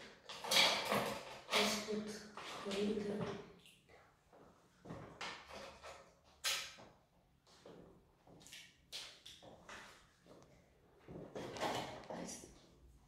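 Ice cubes clicking and knocking against a glass jar as they are picked out with tongs, a scattered run of short sharp clicks with one sharper knock past the middle.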